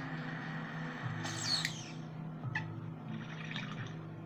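Glass water bong bubbling as smoke is drawn through the water, with quiet background music underneath.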